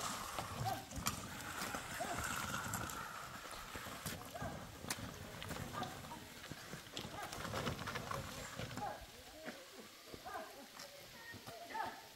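Footsteps crunching and scuffing on loose stones and gravel as someone walks down a rocky slope, an irregular run of sharp clicks that grows fainter after about nine seconds.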